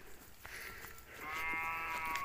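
A cow mooing: one long, steady-pitched call that starts faintly about a second in and grows louder.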